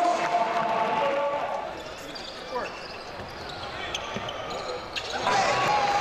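Basketball game sounds on an indoor court: voices from the stands and court, loud at the start and again from about five seconds in, with a basketball bouncing on the hardwood floor and a few short squeaks in the quieter stretch between.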